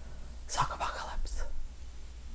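A woman whispering a few words, starting about half a second in, over a steady low room hum.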